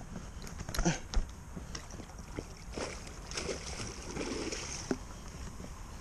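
Faint sloshing and light splashes of water as a hooked pike moves at the surface close to the bank, with scattered soft clicks and rustles.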